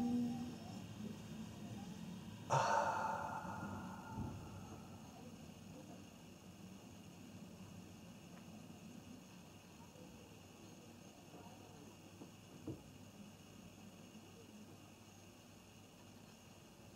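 A man's breathy sigh, starting suddenly about two and a half seconds in and fading out over a second or so. Then quiet room tone, with a faint click near the end.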